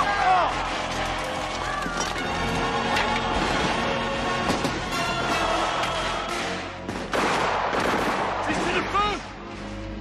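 Battle sound from a film: repeated musket fire amid a shouting crowd, mixed with dramatic film music. The shots come irregularly throughout, and the din drops back near the end.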